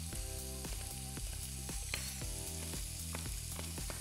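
Sliced Greek village sausage sizzling in a dry pan, frying in the fat it renders with no oil added, steady and even throughout. Soft background music plays underneath.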